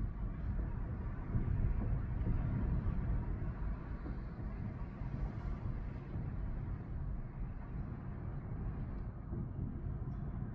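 Hurricane storm noise: a steady low rumble of wind buffeting the microphone over rough, choppy storm-surge water.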